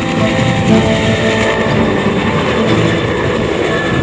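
A two-bladed military utility helicopter flying low past, with loud, steady rotor and turbine noise.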